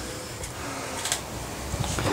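Steady background hum and hiss from a fan-like machine, with a few faint ticks.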